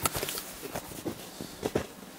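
A few faint, scattered clicks and taps, about half a dozen over two seconds, over low background hiss.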